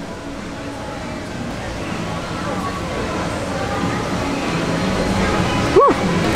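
Steady outdoor background noise with faint distant voices, growing slowly louder, while a person tastes food in silence; just before the end comes a short rising vocal 'mm'.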